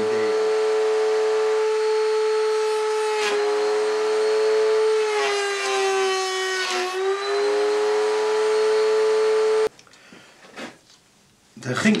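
Electric router running at full speed with a steady high whine. About five seconds in, its pitch sags and a cutting noise joins it as a wooden lath is fed past the bearing-guided bit. The cut goes wrong because the lath slips under the bit's bearing wheel. The whine cuts off suddenly near the end.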